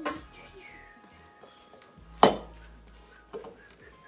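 A single sharp knock about two seconds in, the loudest sound, with a couple of softer knocks around it, from metal kitchenware being bumped on the worktop while bread dough is handled.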